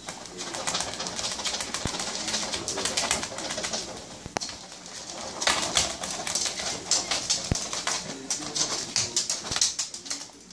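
A brush worked in quick, repeated strokes through a pug's short coat, with a scratchy rustle on each stroke. The pug gives short, low grunts now and then.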